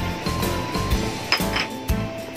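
Background music with held notes, and a few sharp clinks of a dish or utensil against a metal cooking pot about a second and a half in.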